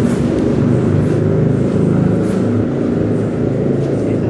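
Steady low rumble of passing road traffic, motorbikes and cars, continuous and fairly loud with no clear breaks.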